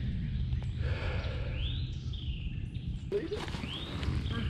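Outdoor ambience: a steady low rumble on the microphone, with a few high whistled bird calls that rise and fall, about a second and a half in and again near the end.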